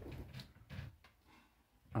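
Large wardrobe rolling on silicone casters as it is pulled away from the wall: a faint low rumble with a couple of light clicks for about a second, then near silence.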